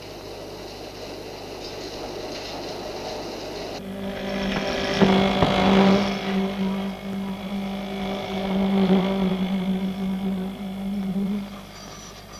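Concrete-pouring machinery running steadily as wet concrete is placed over rebar. About four seconds in, a louder, steady, even-pitched hum starts and lasts until near the end.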